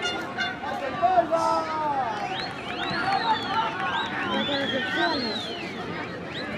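Several voices shouting and calling at once across a football pitch, overlapping, from players and people at the touchline. Higher drawn-out shouts come in the second half.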